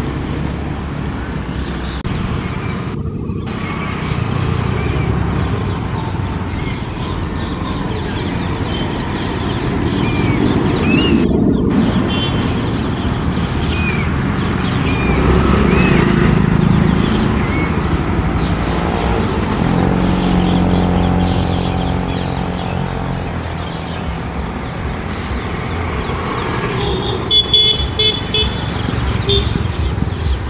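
Road traffic noise: a steady low rumble of vehicles with horn toots and a passing engine drone about twenty seconds in, with short high bird calls scattered through.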